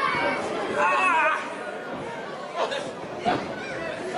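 Voices and crowd chatter in a hall, loudest in the first second and a half, then two sharp smacks from the wrestlers in the ring, about half a second apart.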